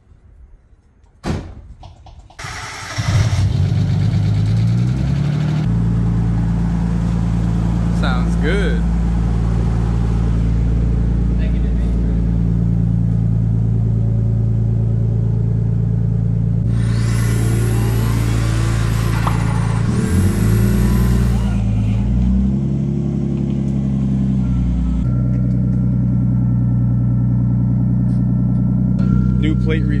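Nissan Skyline R32 sedan's RB-series straight-six starting about three seconds in after sitting unused, then running at a loud, steady idle whose pitch steps up and down a few times. A few seconds of hiss with a thin high whistle come past the middle.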